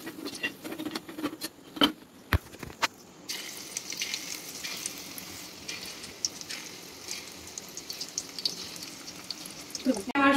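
A metal spoon clinks and knocks against a steel frying pan and bowl as fried fritters are lifted out. From about three seconds in, hot oil sizzles and crackles steadily in the pan.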